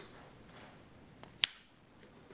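Ganzo G719 automatic knife firing open: a faint click, then, about a second and a half in, one sharp metallic snap as the spring drives the blade out and it locks.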